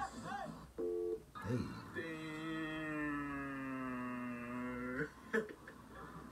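A short electronic beep about a second in, then a long held tone for about three seconds whose pitch sinks slightly: the tone of a colour-bar test-card transition.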